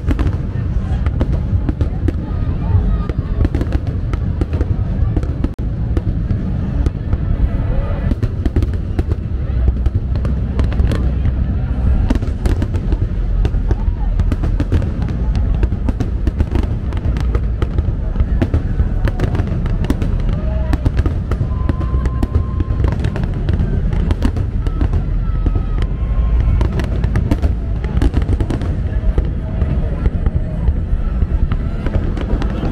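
Large aerial fireworks display, shells bursting in quick succession: many sharp bangs over a continuous low rumble.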